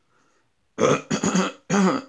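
A man coughing twice, starting about a second in, the second cough running into the end.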